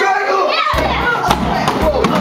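Young children's voices in a large hall over background music with a regular bass beat, with a few sharp thumps in the second half.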